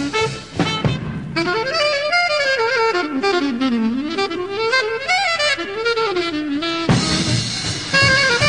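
Jazz recording: after a short band passage, a saxophone plays a solo line that slides up and down in pitch, and the full band comes back in about seven seconds in.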